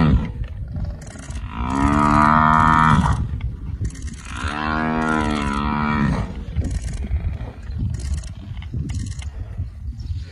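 Cape buffalo bellowing in distress while lions hang on it: two long drawn-out bellows, each about a second and a half, the second starting about four and a half seconds in.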